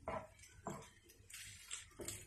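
Wooden spatula stirring cooked fusilli in a nonstick frying pan: two short scraping, squishing strokes, the second about 0.7 s after the first.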